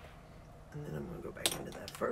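Light clicks and clinks of makeup items handled on a table, the sharpest about halfway through, under a brief murmur from a woman's voice.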